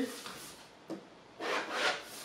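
A clear plastic pattern ruler sliding and turning across drafting paper, a dry rub in two short swells near the end, after a faint tap about a second in.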